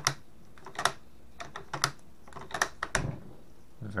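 The bolt of a Portuguese 1904/39 Mauser rifle being worked by hand: a series of sharp metallic clicks roughly a second apart as the bolt is lifted, drawn back and pushed home, with a softer thump near the end.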